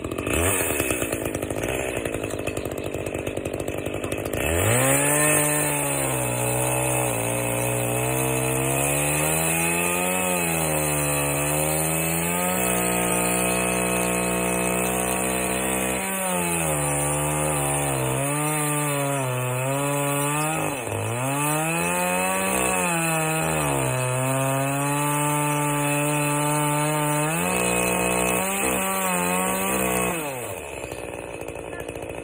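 ECHO two-stroke chainsaw cutting into a large fallen log. The engine note comes through clearly about four seconds in, then dips and climbs back up again and again as the saw works the cut.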